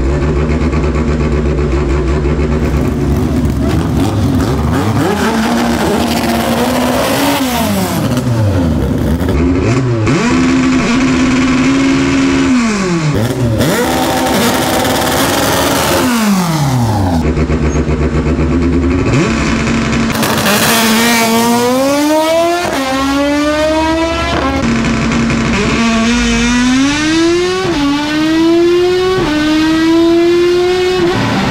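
Naturally aspirated Honda Civic drag car's four-cylinder engine held at high revs, dipping and climbing in pitch several times. From about two-thirds of the way in it accelerates hard through the gears: each rising whine is cut by a sudden drop in pitch at the shift.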